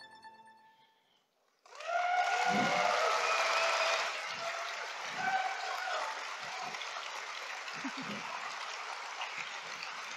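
Closing music fades out into a second and a half of silence, then audience applause breaks out suddenly, with voices calling out over it. The applause is loudest for its first couple of seconds and then goes on steadily.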